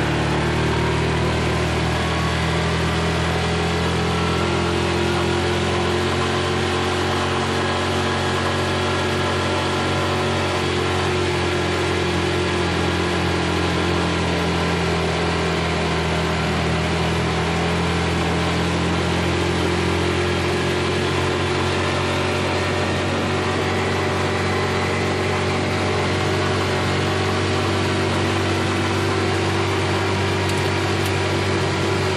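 Yamaha Rhino 450 UTV's single-cylinder engine running steadily under way, heard from the seat, its pitch drifting a little up and down with the throttle.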